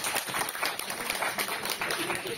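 Audience applauding: a dense patter of hand claps.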